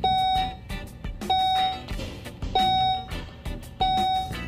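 A 2012 Volvo XC70's dashboard warning chime, a clear electronic tone sounding four times, each about half a second long and a little over a second apart.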